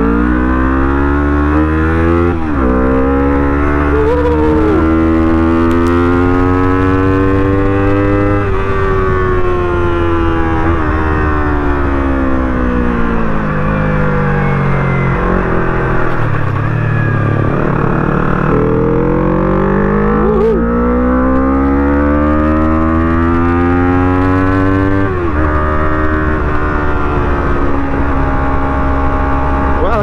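Motorcycle engine pulling away from a standstill, rising in pitch through a gear change about two seconds in and climbing again to about eight seconds. It then eases off with the pitch falling slowly for several seconds, accelerates again up to a second gear change near twenty-five seconds, and runs steadily after that, over a constant low wind rumble.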